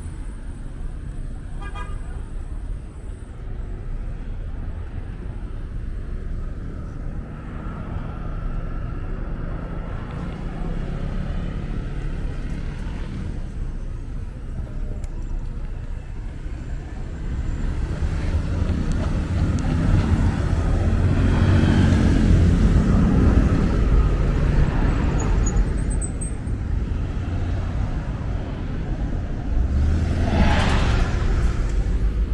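City street traffic: cars passing with a steady engine and tyre rumble that swells to its loudest about two-thirds of the way through.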